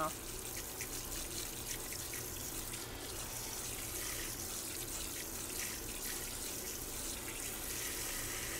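Water from a pull-down kitchen faucet sprayer running steadily onto boiled chicken breasts in a stainless steel colander in the sink.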